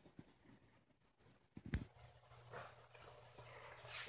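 Faint scattered knocks and rustling, with one sharp click a little under two seconds in, and a faint hiss rising near the end.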